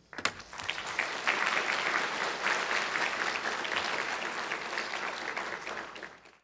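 Audience applauding at the end of a talk: clapping begins just after the start, swells within about a second, then holds and slowly tapers off.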